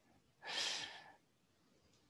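A single breathy exhale, like a sigh, into a microphone about half a second in, lasting under a second, with faint quiet around it.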